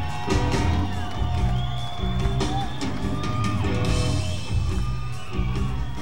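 Live rock band playing an instrumental passage: electric guitar lines that bend and slide in pitch over bass and drums, with whoops from the crowd.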